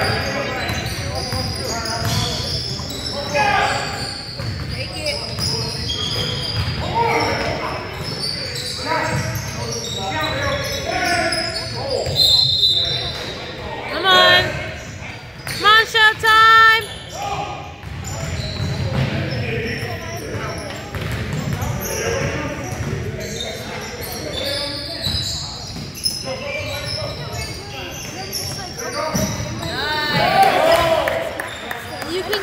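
Basketball game sounds in a large gym: the ball bouncing on the hardwood court and sneakers squeaking, with a cluster of sharp squeaks around the middle, over indistinct voices echoing in the hall.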